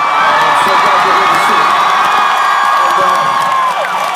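Large stadium crowd cheering and screaming, a sustained wall of many high voices that tails off just before the end.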